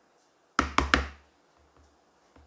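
A metal spoon knocking three times in quick succession against the side of a dish while melted chocolate is scooped and spooned into cake batter, about half a second in.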